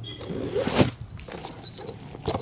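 Stitching thread pulled through a leather shoe during hand sewing: one scratchy pull that swells to a peak just before a second in, then a few faint ticks.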